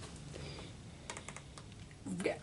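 Quiet room with a short run of faint, light clicks about a second in.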